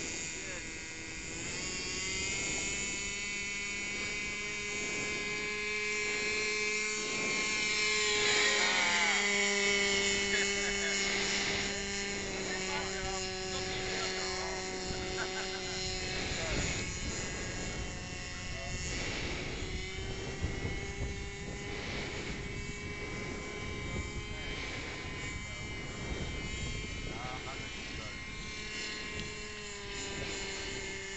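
Small engine of a radio-controlled model autogyro running with a steady buzzing note that steps up in pitch about a second in as it is throttled up for the hand launch, then holds while it flies, fading and coming back as it circles.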